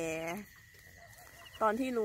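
A woman's voice drawing out the end of a word, then a pause of about a second before she speaks again. A faint steady high tone runs underneath.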